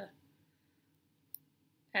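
A single short, sharp click about two-thirds of the way through, over quiet room tone, between bits of a woman's speech.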